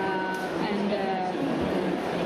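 A voice talking, with the steady noise of a busy hall behind it.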